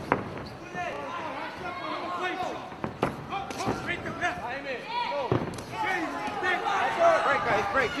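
Crowd and cornermen shouting over one another during an amateur MMA bout, with a few sharp thuds of strikes and bodies landing: the first, right at the start, as a kick lands, then others about three and five seconds in.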